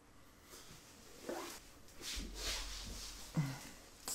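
Faint rustling and handling noises from a person shifting about beside a PVC pipe frame, with a short low vocal sound near the end.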